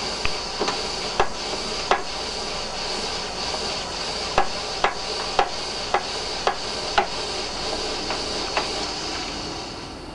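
A smoke generator venting white vapour up a black stack, with a steady hiss and about a dozen sharp clicks at uneven intervals. The hiss eases near the end as the plume thins.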